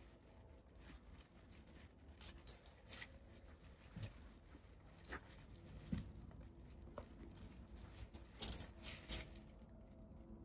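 Faint, scattered clicks and rustles of thick bonsai wire being coiled by hand around a pine branch, with the needles brushing against fingers and wire. A short run of louder clicks comes near the end.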